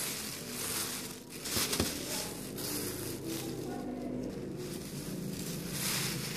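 Cellophane crinkling and rustling as a handmade cellophane pom-pom is gripped and shaken, with a sharp crackle about two seconds in.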